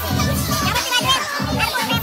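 Loud party music with a heavy bass line, with people's voices shouting and talking over it.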